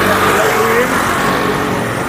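Street traffic of small motorbikes and motor-rickshaws (tuk-tuks): a steady engine drone with traffic noise, one small motorbike close by, easing off slightly toward the end.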